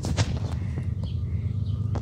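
Low, steady rumble of Norfolk Southern freight train NS 212's diesel locomotives approaching, with a few light clicks over it.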